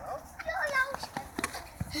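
A child's high-pitched voice calling out for about a second without clear words, followed by a few short, sharp taps.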